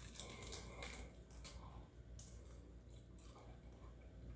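Faint crunching and chewing as a bite is taken from a smoked chicken wing with crispy skin, a few soft crackles scattered through.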